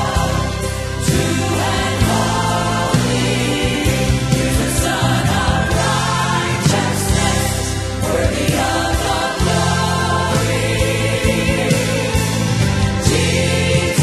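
Gospel choir and lead vocalists singing a worship song live, over full instrumental accompaniment.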